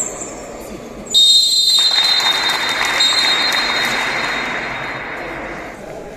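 A long, shrill, steady tone over a hiss. It starts suddenly about a second in and slowly fades out near the end.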